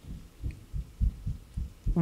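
A run of soft, low thuds, a few a second at an uneven pace, with no voice over them.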